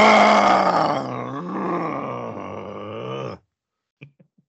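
A man's long, loud, drawn-out groan of mock exasperation, loudest at the start, its pitch dropping and then wavering, cut off abruptly after about three and a half seconds; hard enough on the voice that the other man hopes his voice is okay after it.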